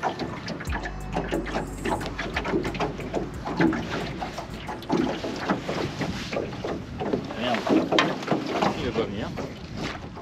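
Indistinct voices talking, with a low rumble on the microphone starting about a second in and lasting a couple of seconds.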